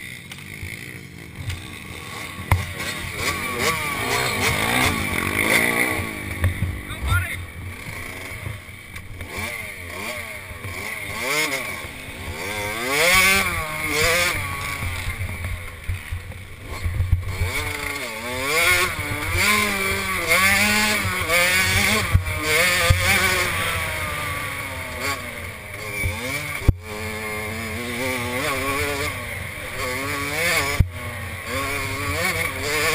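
Small 65cc two-stroke motocross bike engines revving, their pitch rising and falling again and again, with voices mixed in.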